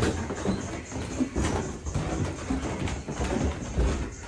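Footsteps of a few people walking through a narrow corridor: irregular dull thuds with a few sharper knocks, over clothing rustle and camera handling noise.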